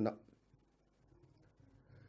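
A man's voice finishes a phrase in the first moment, then a pause of near silence with only faint room tone.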